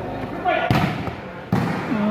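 Hand-struck volleyball being served: two sharp smacks, about two-thirds of a second and a second and a half in, over the chatter and shouts of onlookers.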